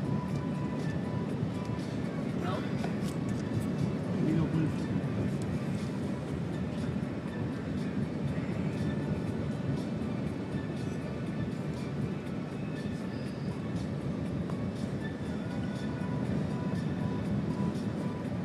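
Steady road and engine noise inside a moving car's cabin, with music and voices playing from the car stereo.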